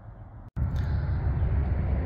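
Low, uneven outdoor background rumble. It breaks off in a brief dropout about half a second in, where the video cuts, then comes back much louder.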